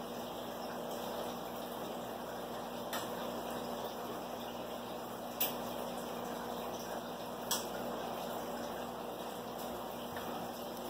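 Steady bubbling and trickling of aquarium filters and air pumps in a fish room, with a low steady hum underneath. Three brief clicks stand out, about three, five and a half and seven and a half seconds in.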